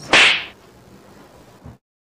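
A short, sharp puff of breath, an exasperated huff, close to a clip-on microphone, followed by low room tone; the sound cuts off to dead silence near the end.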